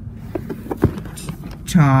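Light handling noise from a cardboard Lego box being turned over in the hands: a few faint clicks and taps as fingers shift on the cardboard, over a low rumble.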